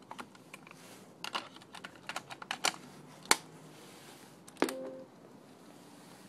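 Hands working a Sony Walkman cassette player: a run of small clicks and taps, a sharp click about three seconds in, then a clunk with a short hum as a key is pressed down and latches.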